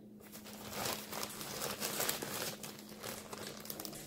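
Crumpled paper crinkling in irregular crackles as hands push pine nuts in among the paper wads stuffed into a stainless steel parrot foraging cage. It starts about half a second in.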